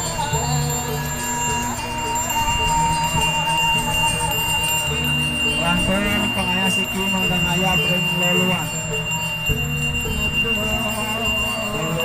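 Traditional Balinese ceremonial music with ringing bells, playing continuously over a low, evenly repeating pulse and long held tones.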